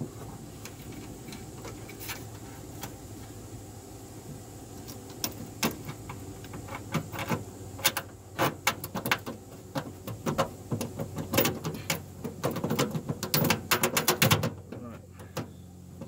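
Small metallic clicks, taps and rattles as the ignition control unit, its mounting bolt and lock washer are handled and fitted against the sheet-metal inner fender, over a low steady hum. The clicks are sparse at first, come thick and fast in the second half, and stop about a second and a half before the end.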